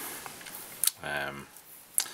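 A man's voice: one short spoken syllable about a second in. There are two faint sharp clicks, one just before it and one at the very end.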